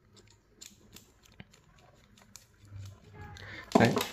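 A few faint, scattered metallic clicks as a small screwdriver works the screw of a gold-plated spade speaker connector held in the hand.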